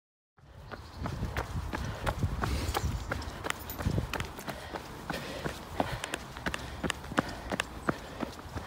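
A runner's footsteps on a paved path, picked up by a phone carried in her hand: even, quick footfalls at about three a second over a low rumble, starting about half a second in.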